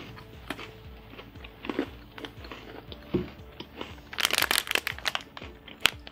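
Crunching bites and chewing of a crunchy chocolate-chunk butter cookie, heard as scattered sharp crackles. About four seconds in there is a dense burst of crinkling, from the plastic cookie packet handled in the hand.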